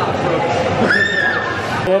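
Excited chatter from a group of young men, with one high-pitched whooping cry about a second in that falls away at its end. The sound cuts off abruptly near the end.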